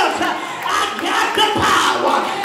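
A preacher's voice in loud, drawn-out cries into a handheld microphone, with long held tones sliding up and down in pitch rather than ordinary speech.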